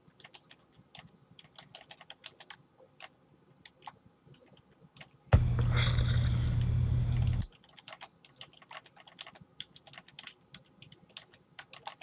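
Computer keyboard typing, quick irregular key clicks. About five seconds in, a loud steady buzzing hum with hiss cuts in and stops suddenly about two seconds later, after which the typing goes on.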